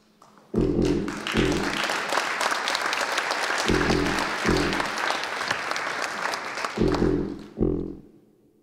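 Audience applauding, the clapping starting about half a second in and dying away near the end. Over it a deep, brass-like note sounds in short pairs, three pairs about three seconds apart.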